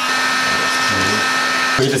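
Electric heat gun running at full blast: a steady whine over the rush of hot air as it blows on foil and heat-resistant tape. It cuts off abruptly near the end.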